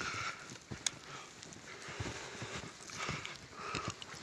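Footsteps trudging through deep, soft snow: irregular dull crunching thuds, a few each second.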